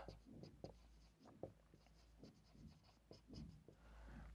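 Marker pen writing on a whiteboard: faint, irregular short strokes as words are written.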